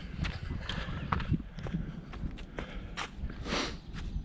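A trail runner's footsteps crunching on dry fallen leaves in a steady running rhythm, with a loud breath about three and a half seconds in and a low rumble on the microphone.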